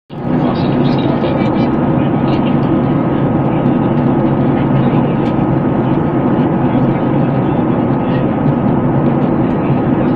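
Steady cabin noise of an airliner in flight: a constant rush of engine and airflow with a thin, steady whine over it.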